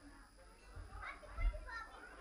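Indistinct chatter of adults and small children around dinner tables, with a low thump about one and a half seconds in.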